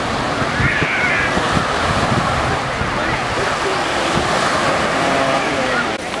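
Shallow surf washing at the shoreline with wind buffeting the microphone, under the distant, indistinct voices of people in the water.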